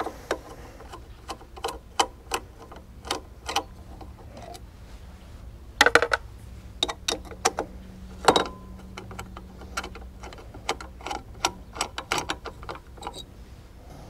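Socket ratchet clicking in short, uneven runs as the bolts holding the old regulator rectifier to the motorcycle frame are undone.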